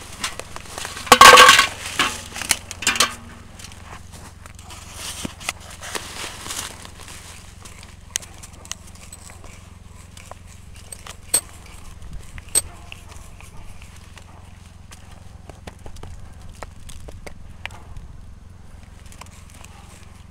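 A hand-turned drill bit boring deeper into a birch trunk to enlarge a sap-tap hole: faint scraping and creaking of the wood, with scattered sharp clicks. The bit is working against sticky, sap-soaked sawdust that is slow to clear the hole. A brief loud burst comes about a second in.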